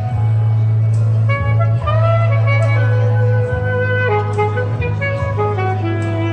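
Alto saxophone playing a slow, smooth melody over a backing track with a steady bass line; the sax line comes in about a second in.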